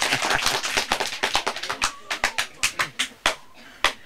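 A group of people clapping their hands in applause, dense at first, then thinning out and stopping a little over three seconds in.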